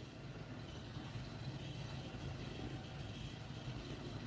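Faint, steady background hum and hiss: room tone with no distinct event.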